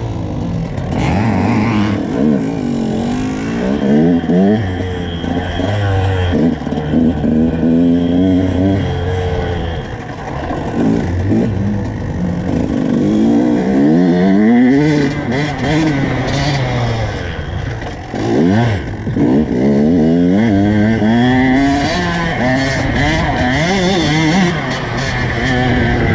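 Two-stroke dirt bike engine under riding load, its pitch climbing and dropping again and again as the throttle opens and shuts and the bike shifts gears.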